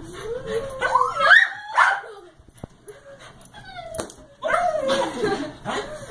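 Small dog whining and yipping in pitched calls that slide up and down: a rising run in the first two seconds, a pause, then another wavering, falling run about halfway through.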